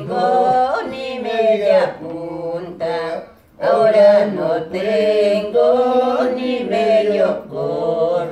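An elderly woman singing unaccompanied, in long held phrases with a short break for breath about three and a half seconds in.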